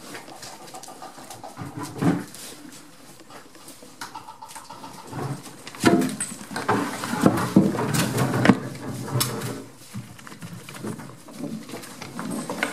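Goats foraging and jostling at close range: irregular rustling, scuffling and knocks, quieter at first and busiest from about six seconds in.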